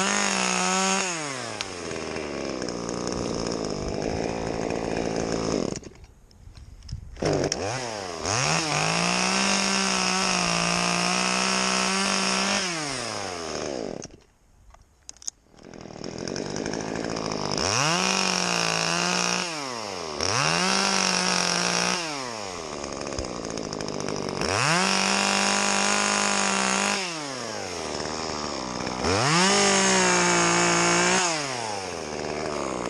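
Two-stroke top-handle chainsaw cutting branches in repeated bursts of full throttle. The revs climb, hold steady, then fall back between cuts. Twice it drops almost to silence, about six seconds in and again about fourteen seconds in, before revving up again.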